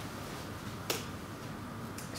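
A single sharp click about a second in, against quiet room tone.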